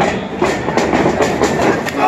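Quick run of sharp slaps and thuds from wrestlers in the ring, about five a second, over the noise of the hall.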